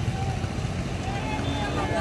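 Steady low rumble of motor vehicles on the road, with faint voices in the background.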